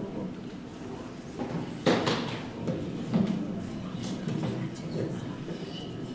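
Concert hall between announcement and song: a low murmur from the audience and stage, with a few handling knocks, the loudest about two seconds in.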